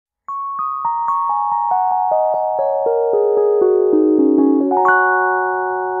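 Fender Rhodes Mark I electric piano playing a falling run of single notes, about four a second, each left ringing so they pile up into a sustained cluster. A higher note enters near the end.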